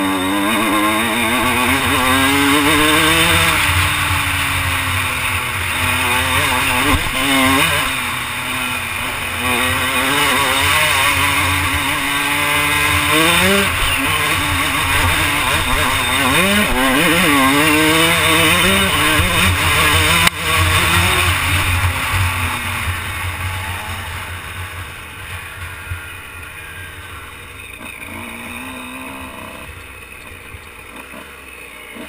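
Dirt bike engine revving up and down as the rider accelerates, shifts and backs off, with wind rushing over a helmet-mounted microphone. A sharp knock comes about twenty seconds in, and over the last few seconds the engine eases off and runs quieter as the bike slows.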